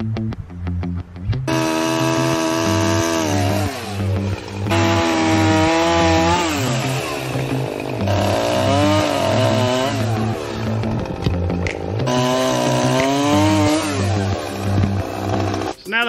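Gas chainsaw cutting through the top of an upright log post, its engine pitch dropping as it loads up in the cut and rising again, over background music with a steady beat. The saw comes in about a second and a half in, with brief breaks between cuts.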